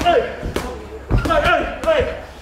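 Boxing gloves landing punches in sparring, a few sharp thuds about half a second apart, with short vocal grunts from the boxers as they throw.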